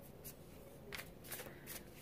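Tarot deck being shuffled by hand, faint: soft card-on-card slides with a few light flicks in the second half.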